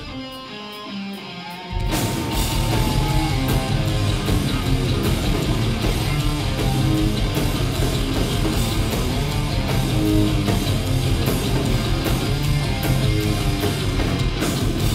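Live hardcore band playing loud distorted electric guitars, bass and drums. A short, quieter opening with a few evenly spaced ticks gives way to the full band coming in hard about two seconds in.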